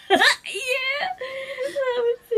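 A woman laughing: a loud burst just after the start, then drawn-out, high-pitched laughter.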